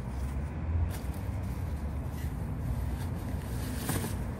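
A large umbrella being unfastened and opened: faint rustling of the nylon canopy and a few light clicks of the frame, rising near the end as the canopy starts to spread. Under it runs a steady low rumble.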